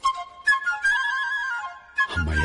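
Film score: a flute playing a short, stepping melodic phrase that fades out near the end.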